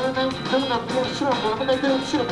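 Live rock band playing a song: electric guitar, bass guitar and drum kit, with a repeating riff.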